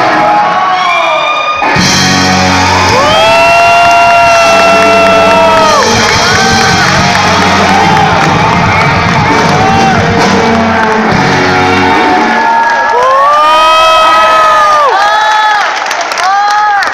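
Live rock band ending a song on a sustained final chord, with loud whoops and cheering from the audience. The band drops out about twelve seconds in, and long whoops and cheers carry on.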